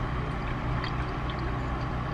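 Steady low hum and hiss inside a car cabin, with a few faint clicks.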